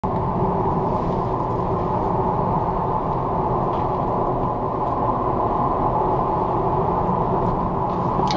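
Steady road and tyre rumble inside the cabin of a Tesla Model Y Performance, an electric car with no engine note, cruising at about 67 km/h.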